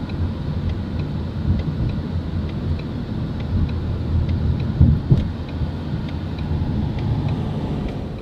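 Ford Mustang cabin noise while driving: a steady low rumble of engine and road, with two thumps about five seconds in.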